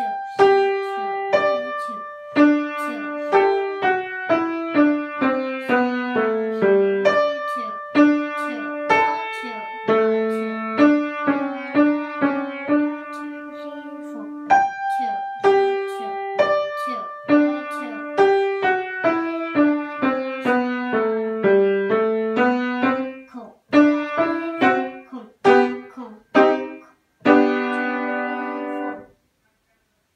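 Seiler grand piano played in a lively, detached melody over a moving bass line, the opening phrase returning about halfway through. Near the end come a few separate chords with short gaps between them, and the last chord is held for about a second and a half before the playing stops.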